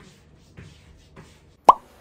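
A single short, loud pop, a plop with a quick pitch sweep, near the end, after two faint knocks; it has the sound of a vlog transition sound effect.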